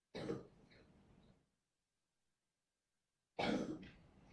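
A man clearing his throat twice: a short rasp just after the start and another near the end.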